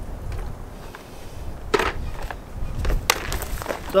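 Wind noise on the microphone, with a few short clicks and knocks of handling. The clearest knock is about two seconds in, and another comes just after three seconds.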